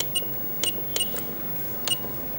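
A handful of sharp clicks at uneven spacing, most with a short high beep: key presses on an ultrasound machine's control panel.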